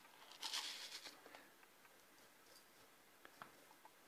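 Seramis clay granules crunching briefly under fingers pressed into the pot around a seedling's roots, about half a second in, followed by a few faint clicks of shifting granules.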